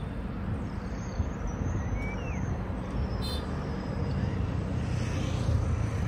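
Outdoor background sound: a steady low rumble, with a few faint short chirps and a brief click about three seconds in.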